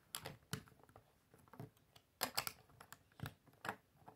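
Plastic Lego bricks clicking as they are pressed together and set down on a wooden table: a string of sharp clicks, with a quick cluster of them about two seconds in.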